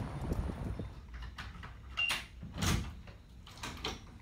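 A motel room door being unlocked and opened: a run of small clicks from the key and lock, a short high beep about halfway, then a couple of louder clunks as the latch gives and the door opens.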